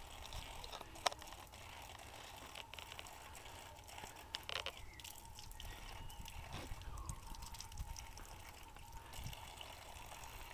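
Faint trickle of a thin stream of water running from an outdoor tap, broken by small splashes as a child's hands play in it. A sharp click sounds about a second in, with a few smaller ones later.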